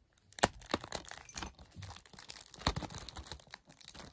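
Crinkling and rustling of packaging and the plastic shrink-wrap on a Blu-ray case being handled, with a few sharp clicks and taps.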